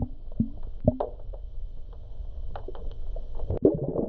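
Muffled underwater sound picked up by a submerged camera: a low rumble with short bubbling gurgles and several sharp knocks, under a faint steady high whine.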